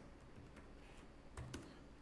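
A few soft keystrokes on a computer keyboard, coming near the end, over faint room tone.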